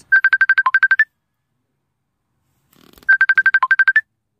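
Phone ringtone: a quick run of about ten high electronic beeps, one of them lower, lasting about a second, then repeated after a two-second gap.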